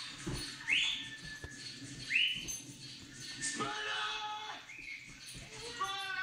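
A man whistling to call a dog back: two short rising whistles, then a long shouted call that falls in pitch.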